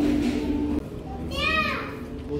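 A young child's high-pitched voice: one short call that rises and falls about a second and a half in. Before it, background music stops just under a second in.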